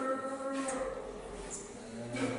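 A long, drawn-out human moan, a zombie groan, already sounding at the start and dying away over about a second and a half.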